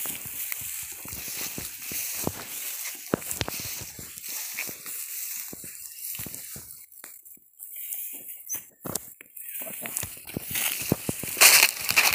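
Footsteps through grass and dry banana leaves, with irregular rustling and crunching of vegetation. A louder swish near the end as leaves brush close past.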